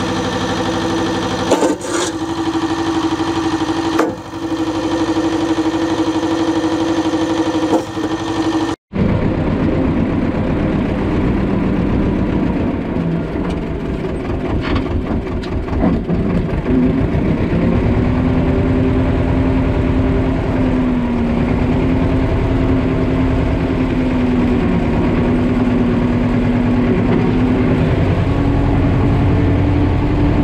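Tractor engine running steadily as the tractor drives, its note shifting slightly in pitch partway through. A few sharp knocks come in the first several seconds, and the sound cuts off briefly about nine seconds in.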